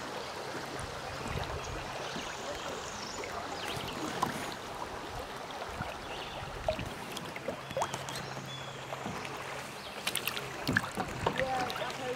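Creek water rushing and lapping around a kayak as it floats and is paddled along, with a few sharp knocks and splashes that come thicker near the end.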